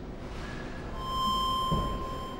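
A steady electronic beep, a single pure tone near 1 kHz, starts about a second in and holds for about a second and a half over faint room noise.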